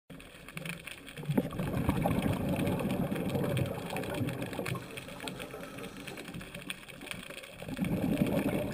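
Muffled underwater rumbling with scattered crackling clicks, picked up by a submerged camera. It swells about a second in and eases off toward the end.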